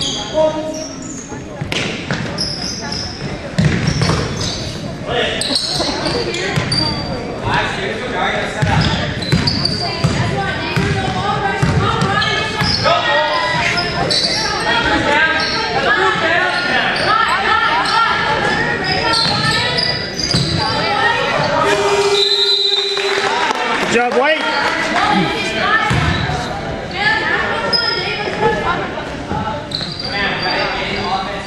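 Basketball game sounds in an echoing school gym: a ball dribbling and bouncing on the hardwood, sneakers squeaking, and players and spectators calling out. A brief steady tone sounds about two-thirds of the way in.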